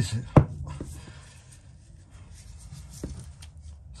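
A sharp knock about half a second in, then faint handling rustle and a small tap about three seconds in, as a plastic split charge relay is held and positioned against a van's metal body panel.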